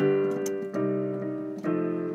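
Piano chords played one after another, about one new chord every 0.8 s, each held until the next: a chord progression modulating from C major to B-flat major by way of a pivot chord.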